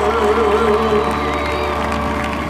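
A male singer holds a final note with a steady vibrato over a backing track. The note fades out about a second in while the music winds down.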